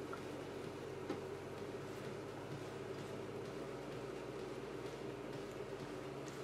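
Faint stirring of cooked buckwheat groats with a silicone spatula in a stainless steel pan: a few soft ticks and rustles over a steady low hum.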